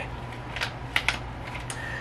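A few light clicks and taps from soft-plastic lure packaging being handled, over a steady low hum.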